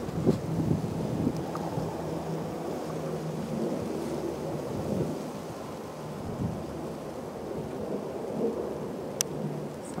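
Jet airliner flying overhead: a steady low rumble of its engines.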